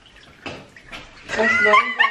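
A woman's high-pitched squealing shriek of laughter, starting after a short lull about halfway through, rising and bending in pitch.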